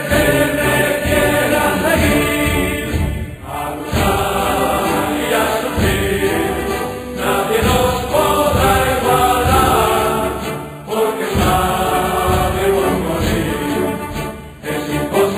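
Music with a choir singing long held notes over a steady beat of drums.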